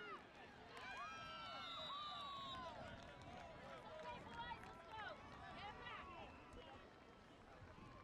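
Faint overlapping voices of spectators and players calling out across an open field, over a low rumble.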